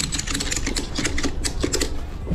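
Ratchet tie-down strap being cranked to secure a load on a pallet: a quick, uneven run of sharp metal ratchet clicks.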